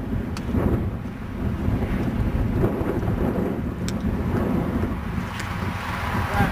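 Wind buffeting the microphone, a steady low rumble that rises and falls, with a few faint ticks.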